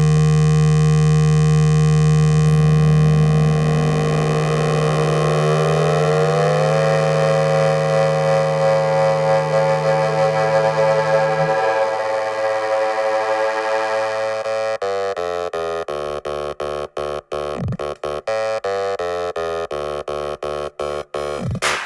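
Electronic dance music from a DJ set: a held synthesizer chord whose notes slide upward over the first several seconds, like a siren. The deep bass drops out about halfway through. Near the end the synth is chopped into rapid stutters.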